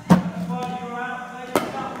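A loud thump right at the start, with a short low hum after it. About a second and a half later comes a sharp crack as a cricket bat strikes a machine-bowled ball cleanly, a well-timed shot.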